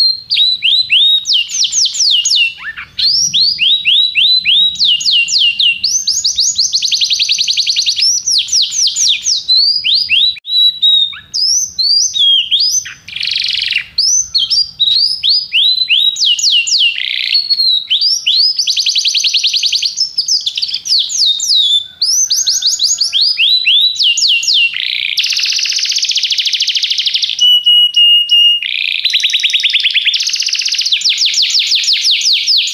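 Domestic canary singing a long, almost unbroken song of fast trills: runs of rapidly repeated down-sweeping notes and buzzy rolls, with a short steady whistled note near the end.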